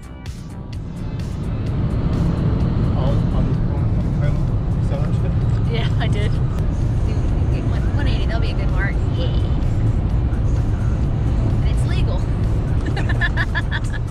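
Loud, steady road and wind roar inside a Peugeot 308's cabin at about 180 km/h, building up over the first two seconds.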